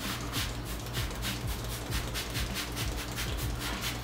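A handheld trigger spray bottle on its mist setting, giving rapid repeated short hissing squirts of soapy water onto a K&N cotton-gauze air filter.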